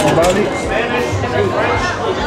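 Voices talking in an indoor public space: speech and chatter, with no other clear sound standing out.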